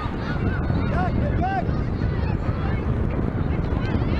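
Outdoor field ambience dominated by wind rumbling on the microphone, with a few short calls that rise and fall in pitch, mostly in the first two seconds.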